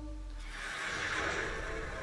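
An animated trailer's soundtrack playing at low level: music, with a noisy swell that builds from about half a second in.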